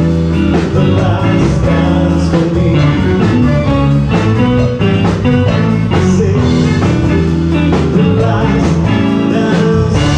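Live band playing a pop song, with electric bass, guitar, drums and keyboards, and a male voice singing over it.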